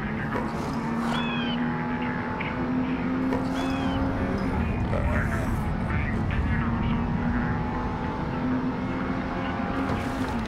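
Car engine running steadily as the car drives along, with a cartoon character's short, high vocal squeaks on top a few times.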